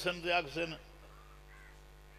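A man's voice reciting a repeated refrain into microphones, breaking off under a second in, followed by a quiet pause with only a faint, brief call in the middle.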